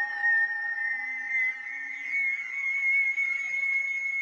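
Moog Animoog Z software synthesizer holding sustained, slightly wavering tones, the higher one edging up in pitch, with faint short low notes beneath.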